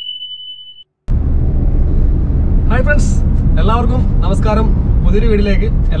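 A single high beep lasting under a second, then, after a brief gap, the steady low rumble inside a moving car's cabin, with a man talking over it from about three seconds in.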